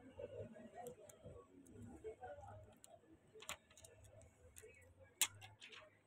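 Clear plastic protective film being handled over a phone's glass back: a scatter of faint sharp clicks and crackles, the loudest a little after five seconds in, over a low steady hum.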